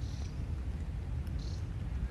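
Steady low rumble of wind buffeting the microphone, with two brief high-pitched chirps, one at the start and one about a second and a half in.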